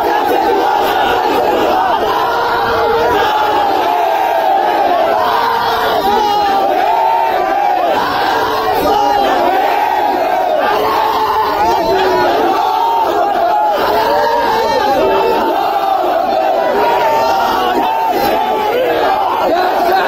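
A large crowd of men shouting protest slogans together, many voices overlapping, loud and unbroken.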